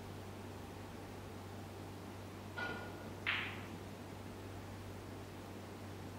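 Quiet hall background: a steady low hum and faint hiss. Two short sounds break it near the middle, the first with a brief held pitch and the second, the loudest, a sharp one that fades quickly.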